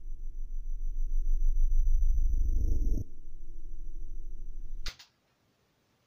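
Guitar loop from the Headrush Pedalboard's built-in looper, played back at low speed and in reverse. It comes out deep and muffled, pulsing unevenly, then cuts off with a click just before five seconds in and goes silent.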